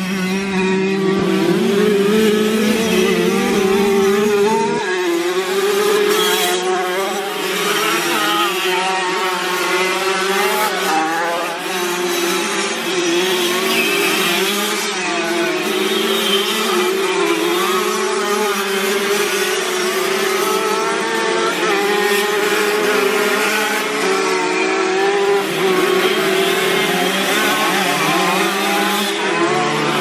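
Several classic 50cc two-stroke motocross bikes riding on a dirt track, their small engines overlapping and revving up and down as they pass.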